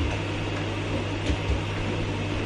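Steady low electrical hum of a running kitchen appliance, with a few soft thumps of footsteps on the floor about a second and a half in.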